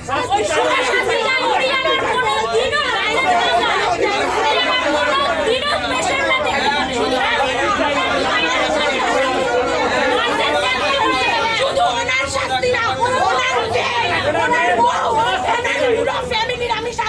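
A crowd of people shouting and arguing over one another in agitation, with several loud voices overlapping and no pause.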